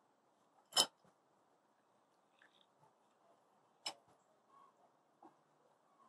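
Cast-metal hand citrus press clicking as a lime half is loaded and squeezed: a sharp metallic click just under a second in, another near four seconds, and a couple of faint ticks after, otherwise quiet.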